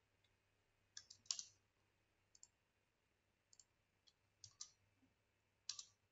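Faint, scattered clicks of a computer keyboard and mouse, about eight in all, irregularly spaced, the loudest about a second in and just before the end, over a faint steady low hum.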